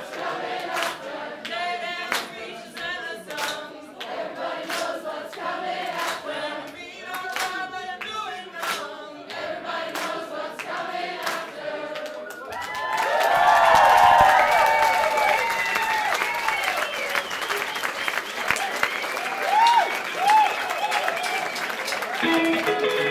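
Many voices singing a chorus together without instruments, with hand claps in time to the beat. About twelve seconds in the singing breaks into louder cheering, applause and whistling from the audience.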